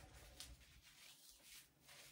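Near silence, with faint brief rustles as the wired branch tips of an artificial Christmas tree are bent and fanned out by gloved hands.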